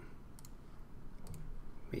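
Computer mouse button clicking twice, each a short sharp press-and-release click, about a second apart, as on-screen items are selected.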